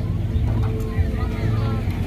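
A small engine running steadily with a low drone.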